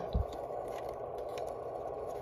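Faint clicks and light scraping of a WindCamp ADP-1 plastic Powerpole adapter being pushed into the rear DC power socket of a Yaesu FT-817 radio, over steady background noise.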